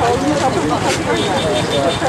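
Several people talking over one another, not in Polish, over the steady rumble of vehicles and engines around, with a short sharp click about halfway through.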